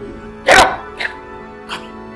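Background music with several short, sharp bursts over it; the loudest, about half a second in, is followed by two weaker ones.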